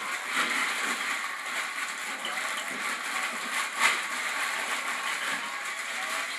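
Wrapping paper and gift packaging rustling and crinkling as children unwrap presents, a continuous crackly rustle with one sharper crinkle about four seconds in.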